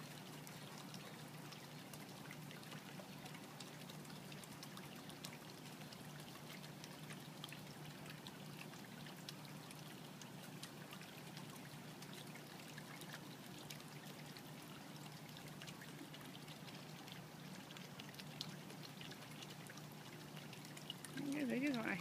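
Faint, steady trickle of water from a small garden pond, with a low steady hum underneath.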